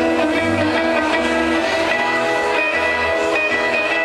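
Live band playing an instrumental intro: held chords over a bass line that moves in long notes, with no singing.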